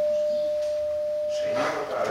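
A single steady, high-pitched tone, typical of microphone feedback ringing through a public-address system, holds level and then stops about one and a half seconds in. A man's voice comes in near the end.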